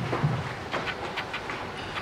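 Scattered light knocks and clicks from performers shuffling and stepping about a stage, a brief low hum at the start, with no singing or music.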